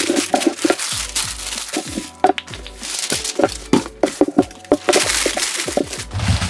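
Sheets of packing paper crinkling and rustling with many sharp crackles as shoes are wrapped in them by hand, with background music underneath.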